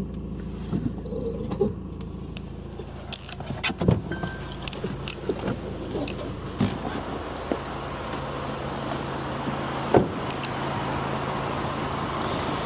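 Honda Accord 2.2-litre diesel running at idle, a steady low hum, with scattered light clicks and two sharp knocks, one about four seconds in and a louder one near ten seconds.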